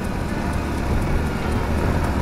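Steady rush of wind on the microphone over the low rumble of a Bajaj Avenger 220 cruiser's single-cylinder engine and tyres, riding along at about 60 km/h.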